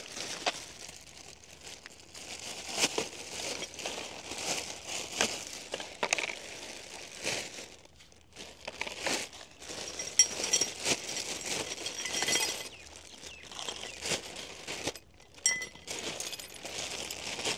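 Clear plastic parts bags crinkling and rustling as they are handled and opened, with a short run of light clinks from small parts about two-thirds of the way through.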